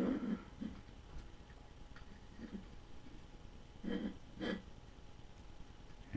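A person breathing out twice through the nose, short and half-voiced, about half a second apart, over quiet room tone.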